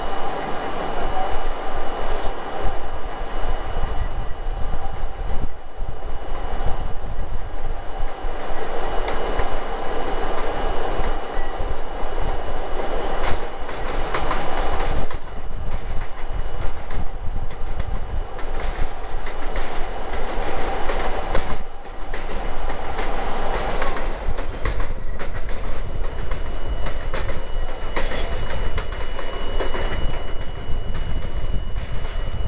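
R32 subway car running along elevated track, heard from inside the front car: a steady rumble of wheels on rail with repeated clicks over rail joints and a thin high-pitched wheel squeal.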